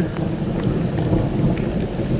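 Heavy rain with wind buffeting the microphone: a steady, rough rushing noise.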